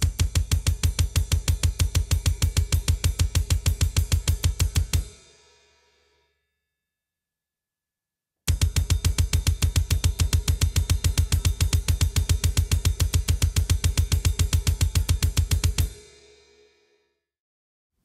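Metal drum kit playing a blast-beat drill: fast, even strokes of kick drum, snare and cymbal locked together. It comes in two bursts, about five and about seven seconds long, with a short silence between them, and the cymbals ring out at the end of each burst.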